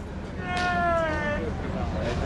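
A man's single long, high-pitched call, sliding slightly down in pitch, urging on a draft horse that is pulling a log-loaded sled.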